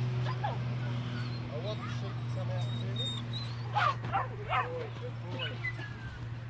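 Border collie pups yipping and barking as they work sheep, several short high yips coming in a quick burst about two thirds of the way through.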